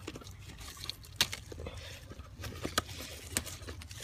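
Soft rustling and a few sharp clicks as a hand moves among gotu kola leaves in a planter, over a low steady rumble.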